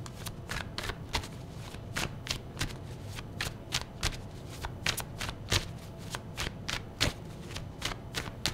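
A tarot deck being shuffled overhand by hand: an irregular run of light card clicks, several a second.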